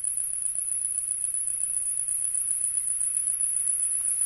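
Insects trilling steadily, a continuous high-pitched buzz, over a faint low hum.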